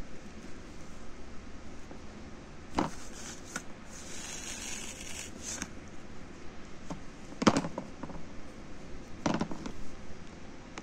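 A screwdriver prying and scraping in the sawn seam of a plastic water-filter cartridge housing, with a few sharp cracks and knocks of the plastic, the loudest a little past the middle, and a short scrape before it.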